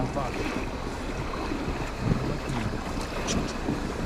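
River water rushing around a raft, with wind buffeting the microphone.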